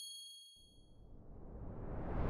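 Logo-animation sound effects: a bright chime of several high tones rings and fades away over the first second, then a whoosh swells up and grows louder toward the end.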